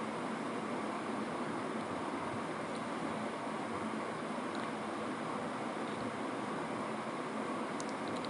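Steady, even hiss in the kitchen with no distinct events, as a pot of spiced tomato stock sits on the stove.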